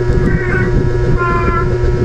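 A cat meowing twice, each meow a short high call of about half a second, over a steady electrical hum.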